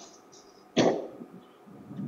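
A person's single short cough about three-quarters of a second in.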